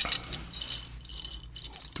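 Metal neck chains and iced-out pendants clinking and jangling against each other as they are lifted and handled by hand, a few light, high-pitched clinks.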